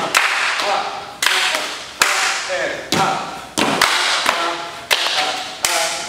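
Dancers' stomps, claps and body slaps on a studio floor, about ten sharp hits in a loose rhythm a little under a second apart, each ringing briefly in the room. Short vocal grunts fall in time with some of the hits.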